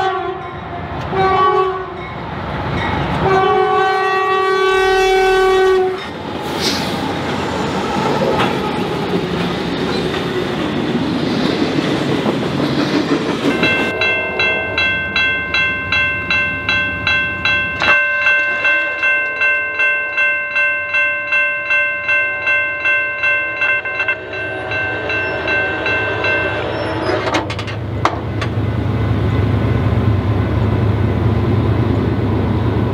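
Diesel locomotive horn sounding the crossing signal: a short blast, then a long one. Then a bell rings at about two strikes a second for some twelve seconds and stops, over the steady rumble and wheel clatter of the passing train.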